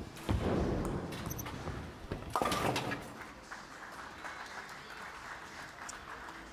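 Bowling ball striking a single pin for a spare, a sudden clatter just after the start, followed by a second loud knock of pins about two seconds later.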